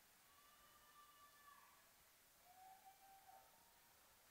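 Near silence, with two faint drawn-out tones: a higher one in the first half that drops at its end, then a lower one later on.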